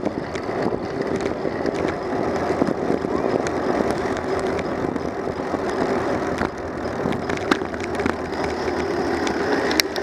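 Bicycle rolling on asphalt: steady tyre and road rumble, with scattered rattling clicks and a few sharper clicks near the end.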